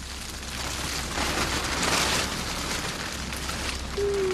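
Rain falling on a tent fly and the wet ground around it: a steady hiss that swells for a second or two in the middle and eases off.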